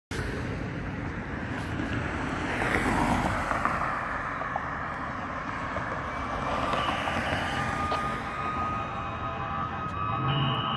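Road traffic: a car passes about three seconds in, its tyre and engine noise swelling and falling away, over steady traffic noise. A faint steady high tone comes in during the last few seconds.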